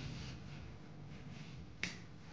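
Wooden rolling pin rolling faintly over dough on a marble countertop, then one sharp click near the end as the pin knocks down on the stone.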